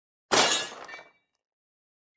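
Glass-shatter sound effect: a sudden crash about a third of a second in, followed by a brief tinkling ring that dies away within a second.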